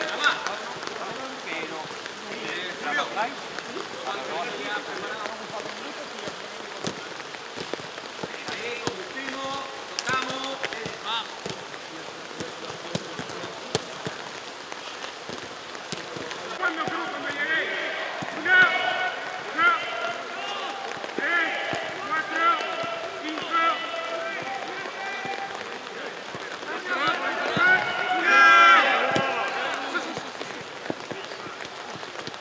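Steady rain falling, with scattered sharp taps through it. Voices shout and call out over the rain, mostly in the second half and loudest near the end.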